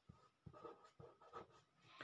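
Faint scratching of a pen on paper as a word is written, in short, irregular strokes.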